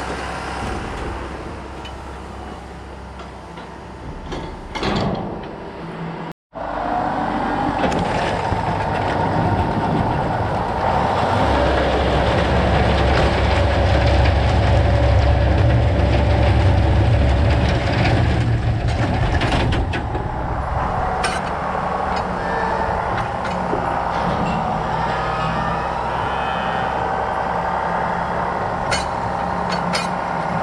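Tractor-driven straw bedding chopper running steadily while it shreds bales and blows the straw out, an engine rumble with a steady whine on top. The sound cuts out for an instant about six seconds in. The rumble is loudest around the middle.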